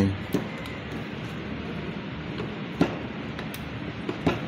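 A few faint clicks of a Phillips screwdriver turning the brush-holder screw into a sewing machine motor, over a steady background hiss.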